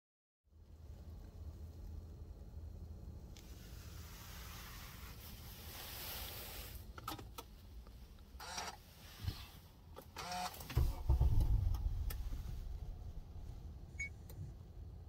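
Honda Accord engine heard from inside the cabin, trying to start: a low rumble, then a louder surge near the end that dies back as the engine bogs and will not stay running. The owner puts the failed start down to the throttle valve not opening all the way (throttle actuator code P2101).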